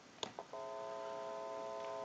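Two short clicks, then telephone dial tone from the line analyzer, heard through an amplified pickup coil at the receiver of a Western Electric 302 rotary telephone. The tone comes in about half a second in and holds steady.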